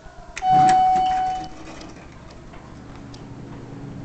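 Elevator arrival chime sounding a single ding about half a second in, one clear tone that rings for about a second and fades, answering the UP hall call button. A low steady hum follows.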